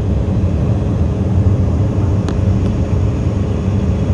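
Steady cabin noise of an airliner in flight: a constant low drone of engines and rushing air, with one faint click a little after two seconds in.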